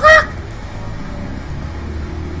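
The end of a man's loud, high-pitched drawn-out shout of "chickens!", a short cry that breaks off about a quarter-second in. Quieter background music and room noise follow.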